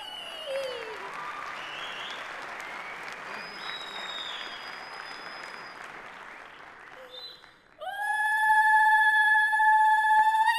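Theatre audience applauding for most of the clip. Near the end a woman lets out a loud, long, steady high-pitched vocal cry.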